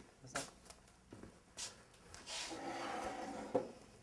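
People's voices without words: brief breathy sounds, then a longer breathy vocal sound for about a second, ended by a sharp click.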